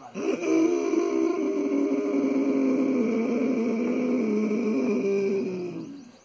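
One long Ujjayi pranayama inhalation drawn in through a narrowed throat: a steady, throaty, rasping breath with a low tone in it. It lasts almost six seconds, sinks slightly in pitch toward the end, and stops just before the end.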